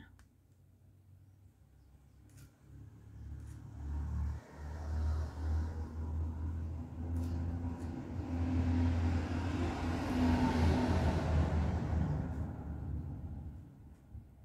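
A motor vehicle's low engine rumble builds up, stays loudest for several seconds and then fades away, as of a vehicle passing by.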